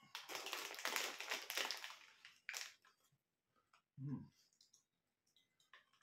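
Crinkly packet of pork scratchings rustling and crackling for about two seconds as it is handled, followed about 4 s in by a short, low 'mm'-like grunt.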